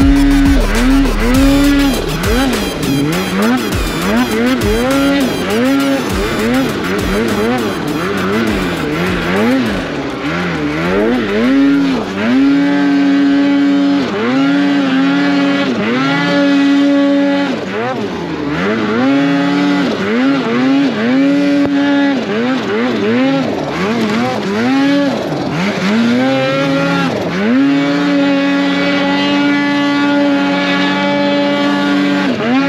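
Mountain snowmobile engine revving up and down over and over as the throttle is worked through deep powder among trees, with a few longer stretches held at steady revs.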